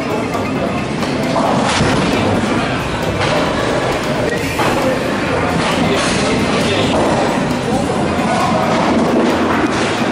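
Bowling ball released from a metal ramp and rolling down a wooden lane, heard within the steady rumble and clatter of a busy bowling alley, with a few thuds along the way.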